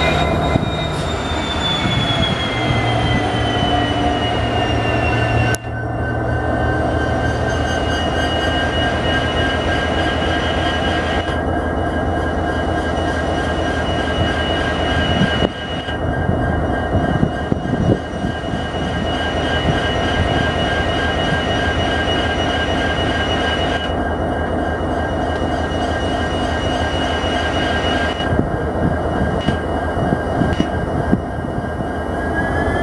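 An electric-locomotive-hauled passenger train running into a station, with a continuous rumble and high whining tones. The highest whine falls in pitch over the first few seconds as the train slows, then holds steady. There are short breaks in the sound about five seconds in and again about fifteen seconds in.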